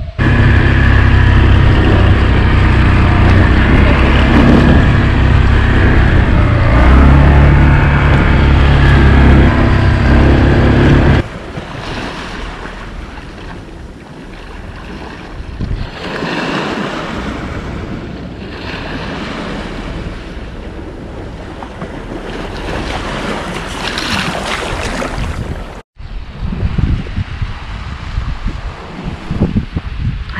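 Strong wind buffeting the microphone, very loud, for about the first eleven seconds. After a sudden change it gives way to a quieter, steady wash of small waves breaking on a rocky sand beach under lighter wind, broken by a brief gap near the end.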